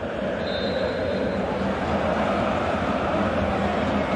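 Steady din of a football stadium crowd, growing a little louder as a penalty kick is about to be taken. A faint high whistle sounds for about a second near the start, likely the referee's signal for the kick.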